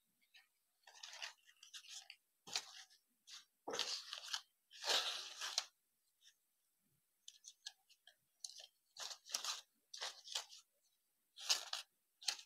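Stiff printed joss paper rustling and crinkling in irregular bursts as hands press and spread the folded pleats of a paper rosette. The longest and loudest rustle comes near the middle, with a short pause after it.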